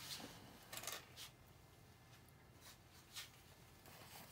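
A few faint, short rustling strokes over near silence: a nail-art brush being wiped clean on a lint-free wipe. Several strokes fall in the first second and one more comes about three seconds in.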